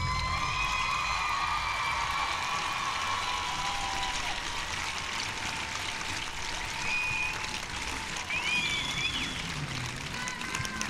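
The routine's music ends on a held note that fades over the first few seconds, leaving the steady noise of a crowd applauding. A few short, high cheers or whistles rise from the crowd near the end.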